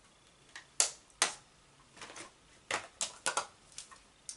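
Plastic highlighter compacts being handled: about eight sharp, irregular clicks and clacks.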